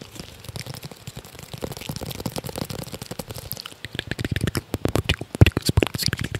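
ASMR tapping and handling of a small object held close to a microphone: a fast, dense run of small clicks and crackles, with heavier, deeper taps between about four and six seconds in.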